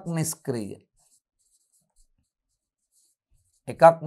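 A man's voice speaking briefly, then a pause of near silence with only faint pen strokes on the board as he writes; speech resumes near the end.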